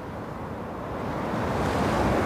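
Wind noise on the microphone: a steady rushing that grows gradually louder.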